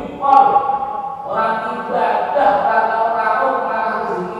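Group of male voices chanting devotional Islamic dzikir in long held notes, led by a voice through a microphone. More voices seem to join about a second in.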